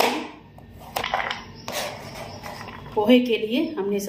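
Kitchen knife knocking and scraping on a plastic chopping board while vegetables are cut: three sharp strokes in the first two seconds, then a woman's voice near the end.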